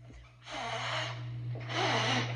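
Breathy, noisy exhalations from a person, starting about half a second in and growing a little louder near the end, with a faint voiced note.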